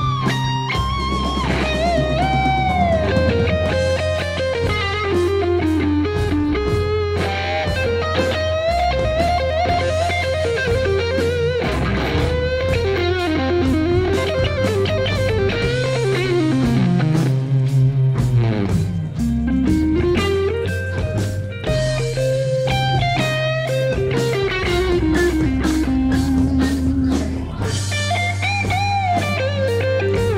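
Electric guitar played through an amplifier: a melodic lead line with long slides up and down in pitch over held low bass notes, continuous throughout.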